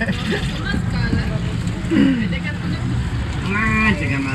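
Indistinct voices talking briefly, near the start, about two seconds in and near the end, over a steady low rumble.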